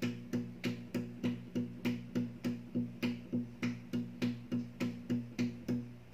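Down-tuned steel-string acoustic guitar playing a steady alternating bass line in even eighth notes, about three short, clipped notes a second, low strings only, with no melody over it.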